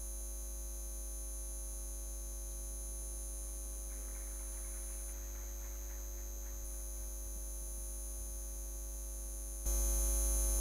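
Steady electrical mains hum from the sound system. A faint, hazy noise comes in briefly midway. The hum jumps louder just before the end.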